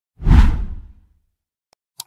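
A whoosh sound effect with a deep low boom. It swells in quickly and fades away within about a second.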